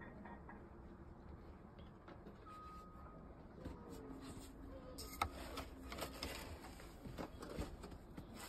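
Faint crunching of footsteps or boots in deep snow, starting about five seconds in as a series of irregular short crunches over a low steady background.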